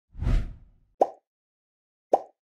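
Animated end-card sound effects: a short whoosh with a low thud in the first half second, then a single short pop about a second in.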